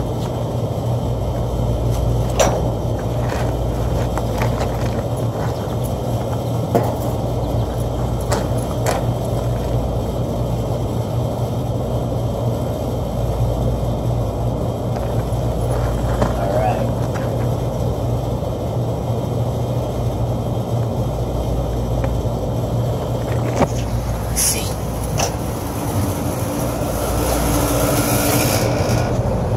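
Steady low hum of rooftop air-conditioning equipment running, with a few light clicks and knocks scattered through it.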